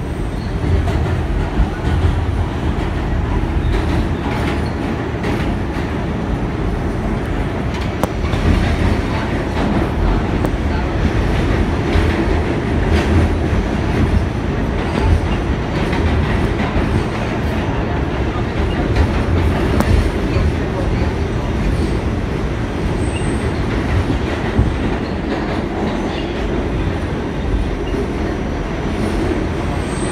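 R46 subway car running along the track, heard from inside the car: a steady, loud rumble of wheels on rails and car body, with no stop or change through the stretch.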